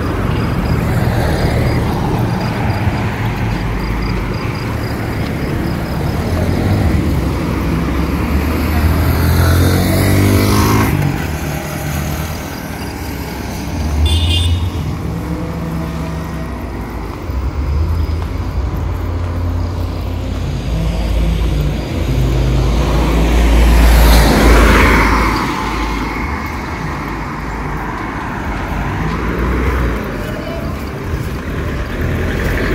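Road traffic passing close by: cars and a minibus drive past one after another over a constant low rumble, each swelling and fading, the loudest pass-by about 24 seconds in. A short high beep sounds about 14 seconds in.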